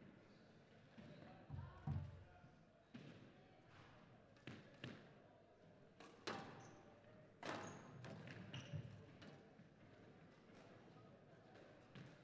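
Squash ball being struck with rackets and smacking off the court walls in a rally: faint, sharp hits about every one to one and a half seconds, a few louder than the rest.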